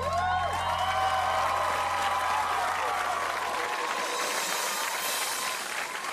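A song's final chord is held with a steady low bass note and cuts off a little past halfway. A studio audience cheers and applauds over it, and the applause carries on after the music stops.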